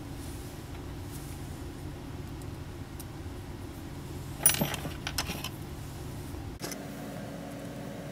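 A few light metallic clinks a little past halfway, as small steel cap screws and a steel bearing block are picked up and handled on a workbench. A steady low background hum runs throughout.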